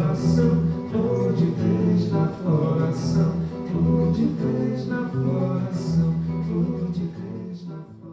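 Live band music with drum kit and guitar and a voice singing, fading out near the end.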